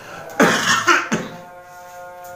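A man coughs into a handkerchief: a hard cough about half a second in and a second, shorter one just after a second in, followed by a steady hum.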